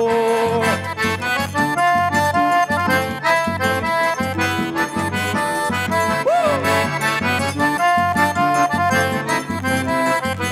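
Instrumental forró break: two piano accordions playing the melody together over a steady beat on the zabumba bass drum, with no singing.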